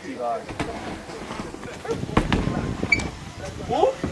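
BMX bike riding a wooden mini ramp: tyres rolling on the ramp surface, with a sharp thump about two seconds in as the bike lands.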